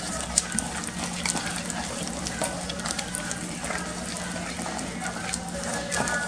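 A wooden spoon stirring thick chocolate brigadeiro cream in a stainless steel pot: a continuous wet scraping with small clicks of the spoon against the pan. A steady low hum runs underneath.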